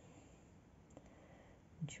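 Near silence: room tone with a faint click about a second in and a small tick just before a word is spoken at the very end.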